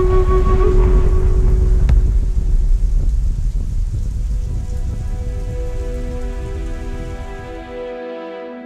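Heavy rain with a deep rumble of thunder, with one sharp crack about two seconds in; the storm fades over the following seconds. Soft sustained music notes fade in about halfway through.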